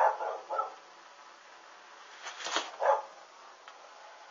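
A dog barking: two short barks at the start, then two more about two and a half seconds in.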